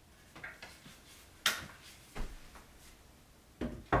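A few short knocks and clunks of the wooden changing-table frame and panels being handled and fitted together, the loudest about a second and a half in and just before the end.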